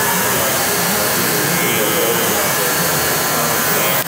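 Electric hair clipper with a 1½ guard running steadily while it fades a beard. The sound cuts off suddenly at the end.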